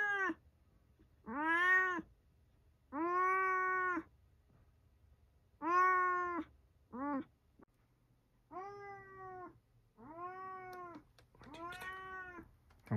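A cat meowing over and over: about seven long, drawn-out meows, each rising then falling in pitch, one every second or so, with one much shorter meow in the middle.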